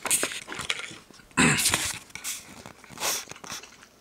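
Camera being handled: a run of clicks, knocks and rustling in short bursts, the loudest about one and a half seconds in.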